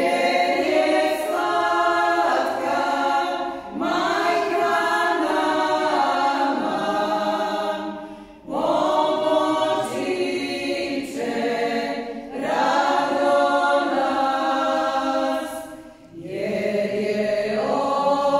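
A women's folk vocal group singing a Croatian church song a cappella, in long phrases with two brief breaks for breath.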